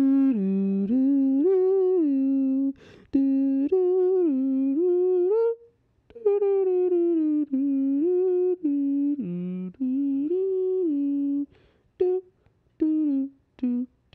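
A person humming a slow tune in long phrases, with short breaks about three and six seconds in, then a few short hummed notes near the end.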